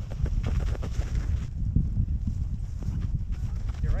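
A sledge sliding fast over packed snow: a rough, uneven rumble with irregular crunching knocks as it runs over bumps, and a deep buffeting on the microphone.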